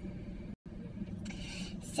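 Steady low hum inside a car cabin, broken by a brief complete dropout about half a second in.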